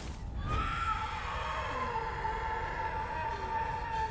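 A giant black Grimm bird's cry: one long, shrill screech that starts about half a second in and falls slightly in pitch, over a low rumble.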